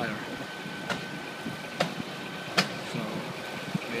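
A Scania fire engine's diesel engine idling steadily, with a thin steady tone over it and three sharp knocks about one, two and two and a half seconds in.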